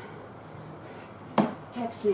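A single sharp knock about one and a half seconds in, as a plastic water bottle is picked up off the equipment rack, then a brief burst of a woman's voice.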